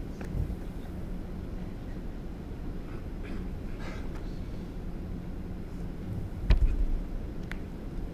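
Indoor bowls arena ambience: a steady low hum of the hall with faint distant voices, broken by one sharp thud about six and a half seconds in and a lighter click a second later.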